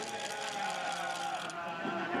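A motor vehicle passing on the race course, its engine hum falling slowly in pitch and fading near the end.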